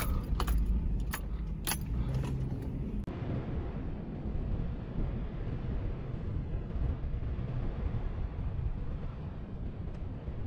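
An SUV's engine running low and steady as it crawls up steep rock. In the first three seconds, heard from inside the cabin, keys jangle and click against the steering column; after that only the low, even engine rumble continues.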